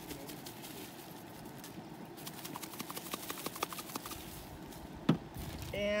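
Seasoning shaker being shaken over a plastic bag of flour, a run of quick small taps and rattles. Near the end, a single sharp snap as a plastic flip-top cap on a seasoning bottle is opened.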